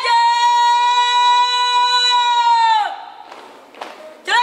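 A young woman's shouted drill command, drawn out as one long high note for nearly three seconds that drops off at the end.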